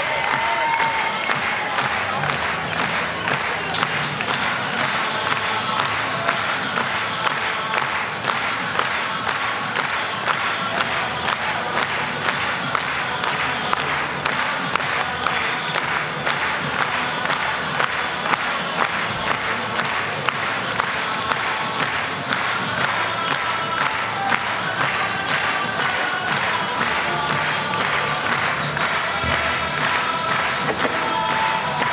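Theatre audience cheering and clapping loudly and steadily, with music playing underneath.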